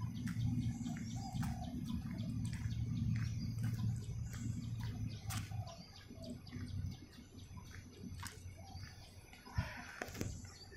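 Birds chirping in short, repeated calls over a low rumble that fades after about halfway, with a sharp click near the end.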